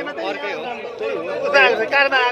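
Men talking, several voices at once.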